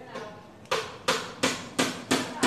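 Repeated sharp knocks with a short ringing tail, evenly spaced about three a second, starting under a second in.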